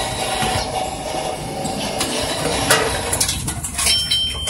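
Reverse vending machine taking in a plastic bottle: its mechanism runs with a faint steady whine and a few sharp clicks about three seconds in. A high electronic beep starts at the very end as the bottle is accepted.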